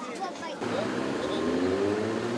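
A motor vehicle engine running, its pitch rising slowly, with people talking nearby.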